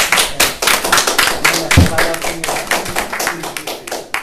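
A small audience applauding: many quick, irregular hand claps, with a few voices mixed in.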